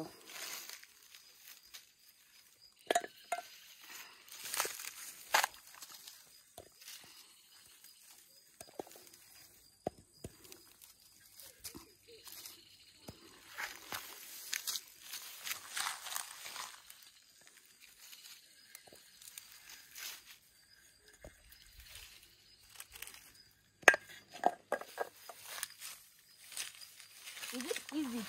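Rustling of grass and dry leaves and footsteps while shea fruits are gathered off the ground, with scattered clinks and knocks of fruits dropped into a metal bowl; one sharp knock near the end.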